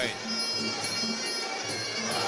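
Sarama, the traditional music that accompanies Muay Thai bouts: a pi java (Thai oboe) plays a sustained, reedy line over a regular drum beat.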